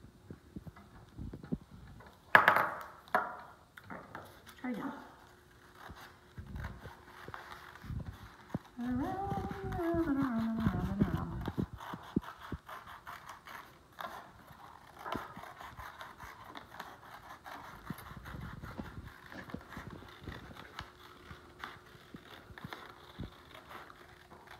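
Scissors snipping through a paper plate, with small clicks and crinkles of the paper as it is turned and cut. A sharp knock about two seconds in is the loudest sound, and a woman's brief wavering vocal sound comes in around nine to eleven seconds.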